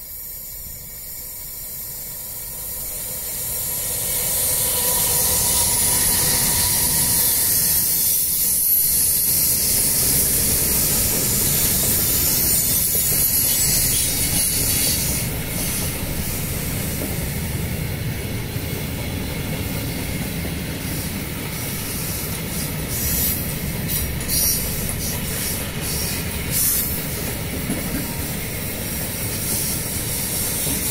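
Electric freight locomotive coming closer and passing, followed by a long string of open freight wagons rolling by: a steady rush and hiss of steel wheels on rail that swells over the first few seconds and then holds. From about halfway on, scattered clanks and clicks come from the wagons' wheelsets.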